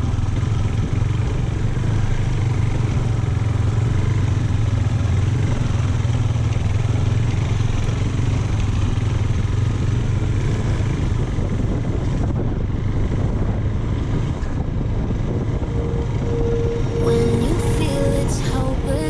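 KTM Duke 390's single-cylinder engine running steadily at a cruising pace on a dirt track, with wind and road noise. Background music comes in near the end.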